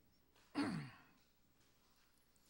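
A man's sigh into the microphone: one short, breathy exhalation about half a second in, its voice falling in pitch as it fades.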